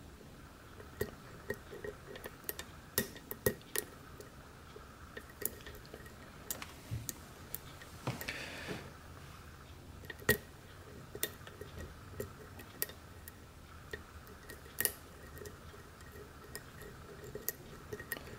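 Light metallic clicks and ticks at irregular intervals from a hook pick and tension wrench working the pins of a five-pin brass pin-tumbler lock cylinder during single-pin picking, with a brief scrape about eight seconds in. The pins are binding and seizing under tension. Faint steady hum underneath.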